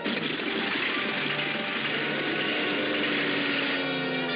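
Cartoon sound effect of aircraft engines starting up and running, a loud, steady rush that starts suddenly, with orchestral music underneath.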